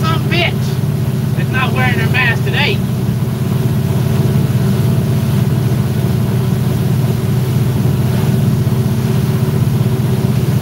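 Motorboat engine running steadily underway, a continuous low drone with rushing noise over it. A man's voice comes in briefly during the first three seconds.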